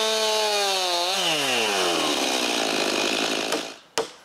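Chainsaw ripping a felled log lengthwise along a nailed-on guide board to square it into a 6x6 beam. Its engine note rises slightly, then drops about a second in and fades as the cutting noise carries on. A sharp knock comes near the end.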